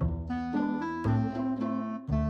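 Instrumental background music: a melody of short pitched notes over held low bass notes.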